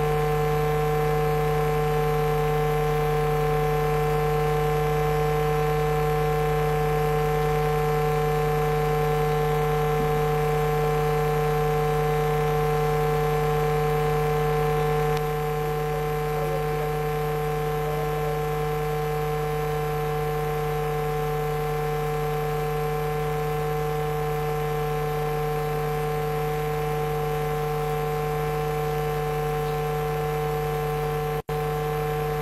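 Steady electrical mains hum and buzz on the sound feed: a low drone with higher buzzing tones above it, unchanging in pitch. It drops a little in level about halfway through.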